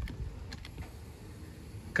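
A few faint, light clicks over a low background rumble.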